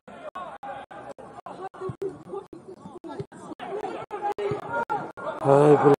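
Several voices talking, the sound chopped by brief dropouts several times a second, then a loud, held shout on one steady pitch near the end.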